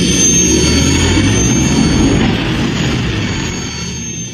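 Spaceship engine sound effect for a Millennium Falcon flyby: a loud, steady rumble with a thin high whine over it, easing off near the end.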